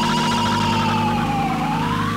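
Electronic music: a wavering, siren-like synthesizer tone slides slowly down in pitch and turns back up near the end, over sustained low synth notes.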